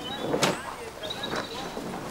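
Faint background voices murmuring over low street ambience, with a brief sharper sound about half a second in.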